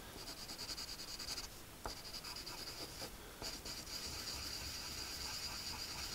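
Pencil shading on paper: a faint, steady scratchy rubbing as dark layers are built up, with two brief pauses, one about one and a half seconds in and one about three seconds in.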